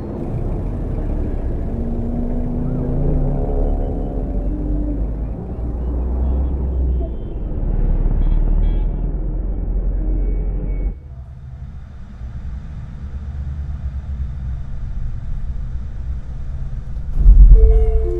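Low rumble of a car moving through town traffic, heard from inside the car. About eleven seconds in, it cuts suddenly to a quieter steady hum, and a heavy thump comes near the end.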